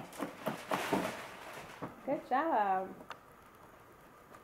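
A person's short vocal sound, falling in pitch, a little after two seconds in, with a few light clicks and taps before it and one sharp click just after.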